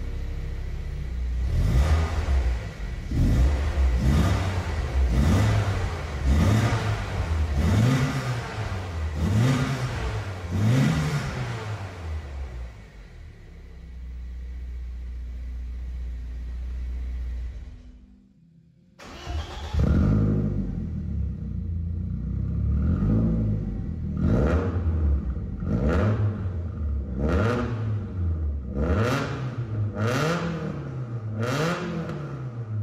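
BMW 318iS E30's four-cylinder engine revved in repeated short blips and settling to idle, through the original rear muffler. After a brief silent break past the middle, it is revved again in quick blips with the rear muffler deleted.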